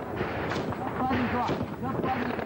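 Battlefield gunfire over a constant background of firing, with two sharp shots about half a second and a second and a half in, and men's voices shouting.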